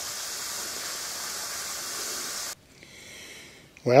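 A steady, even hiss that cuts off suddenly about two and a half seconds in, leaving quieter background; a man's voice begins at the very end.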